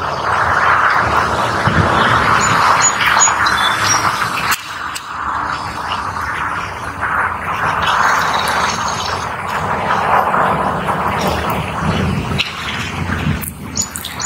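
A Harley-Davidson motorcycle with an Evolution V-twin engine, running out of sight as it rides around the block, its sound swelling and fading. A few short bird chirps come about three seconds in.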